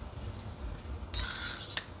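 Quiet room tone with a low rumble, and a brief soft hiss starting about a second in.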